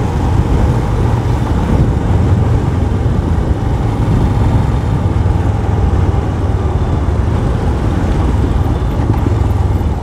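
A Royal Enfield Scram 411's single-cylinder engine running steadily at cruising speed under a constant rush of wind and road noise.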